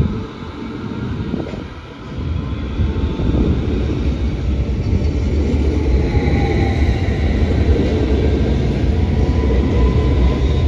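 DB Class 490 S-Bahn electric multiple unit running past close by: wheels rumbling on the rails with a faint electric motor whine, getting louder about two and a half seconds in.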